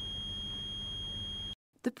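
Tracerco T202 radiation monitor sounding its alarm: a continuous high-pitched electronic note held for about a second and a half, then cut off suddenly.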